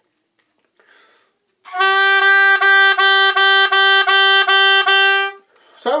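Oboe playing a run of repeated tongued notes on one pitch, a G, about two or three notes a second. The notes are lightly separated by the tongue while the air keeps flowing, which is clean oboe articulation.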